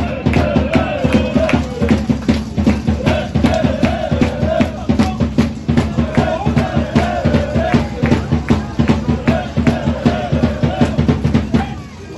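Football supporters chanting a tune to a fast, steady drumbeat from a fan's drum in the stadium crowd.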